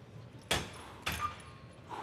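Cable machine clanking as the handle is let go and the cable runs back to the pulley: a sharp knock about half a second in, then a second knock with a short metallic ring about a second in.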